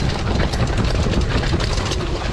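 Mountain bike riding fast over a rough dirt trail strewn with dry leaves: a continuous rattle and clatter of the bike shaking over bumps, over a low rumble of the tyres rolling on the ground.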